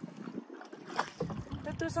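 Wind and water noise aboard a small wooden boat moving across a lake, with no steady motor tone and a short knock about a second in. A voice starts just before the end.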